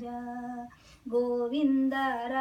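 An elderly woman singing unaccompanied, holding long, slow notes. She breaks off briefly for a breath about two-thirds of a second in and resumes about a second in.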